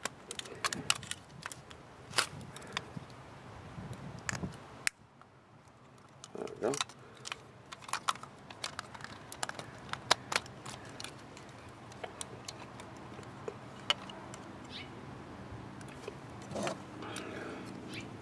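Hard plastic parts of a Bandai MagiKing combiner toy figure clicking and snapping as pieces are pulled apart and fitted together, in scattered sharp clicks with a brief lull about five seconds in.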